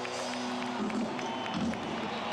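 Live concert music from a large outdoor stage heard from a distance, mixed with crowd noise; a held note ends about a second in, leaving mostly the murmur of the crowd.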